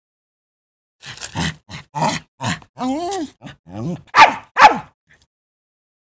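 A quick run of short, pitched yelping calls, about a dozen of them, the two loudest about four seconds in.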